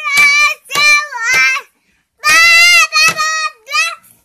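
A young boy singing a nursery rhyme in loud, drawn-out notes, with a few sharp knocks from beating on a plastic jerrycan like a drum. The singing breaks off briefly in the middle, then resumes.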